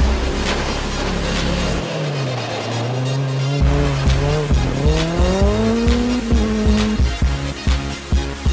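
Background music with a heavy beat mixed over a Renault Twingo rally car's engine. The engine note falls, then climbs steadily over several seconds as the car accelerates.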